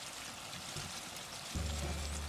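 Oil sizzling steadily around sweet potato balls deep-frying in a wok as a wire skimmer stirs them through the oil. Soft background music comes back in about one and a half seconds in.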